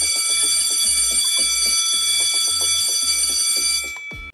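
School bell ringing continuously with a loud, steady high ring, then stopping near the end, the signal that class is over. Background music with a steady low beat runs underneath.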